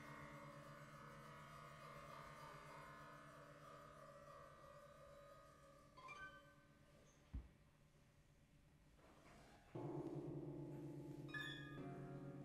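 Acoustic guitars played with bows, holding quiet, sustained low drones that slowly fade. About six seconds in a single high ringing note sounds, followed by a sharp click. Near the end, louder bowed drones come in suddenly.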